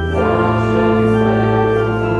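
Church organ playing a hymn in held chords, the chord changing shortly after the start, with voices singing along. This is the closing hymn as the clergy leave the altar.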